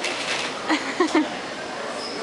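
A few short spoken syllables from a person's voice about a second in, over the steady hiss of shop background noise.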